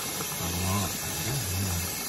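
Kitchen sink faucet running water onto hair being rinsed, a steady hiss.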